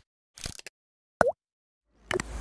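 Logo-animation sound effects: a quick cluster of short clicks about half a second in, then one loud, bright plop with a fast bend in pitch a little past one second.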